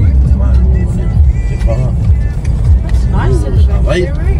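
Steady low road and engine rumble inside a moving car's cabin, with music and voices playing over it.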